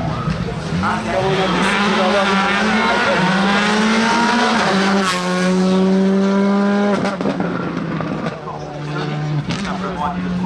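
Rally car accelerating hard past, its engine note climbing through several quick upshifts, loudest about five to seven seconds in, then dropping sharply as the driver lifts off the throttle.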